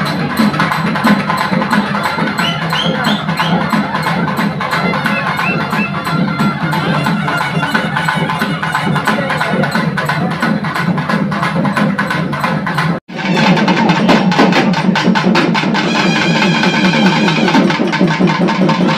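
Fast, dense drumming with music, in a steady rapid rhythm. It breaks off for an instant about thirteen seconds in, then carries on.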